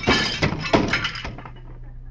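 Radio sound-effect crash of breaking glass as a table goes over. Several sharp smashes and clinks come in the first second and a half, then the crash dies away.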